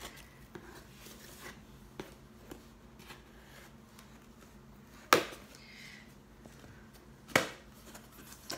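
A cardboard box's packing tape being cut open with a small hand tool: light scratching and small clicks, with two loud sharp clicks about five and seven seconds in.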